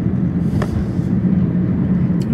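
Steady low road and engine rumble inside a moving car's cabin, with a faint click about half a second in.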